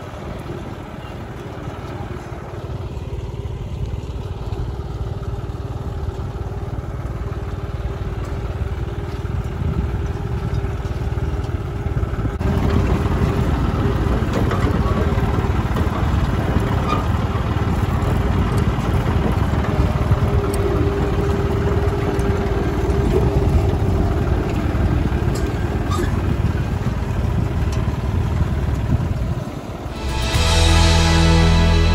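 Tractor engine running steadily while pulling a cotton planter through a field. The sound becomes louder and fuller about twelve seconds in.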